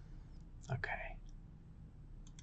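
A man's soft, short spoken "OK", otherwise only low room tone with a faint hum.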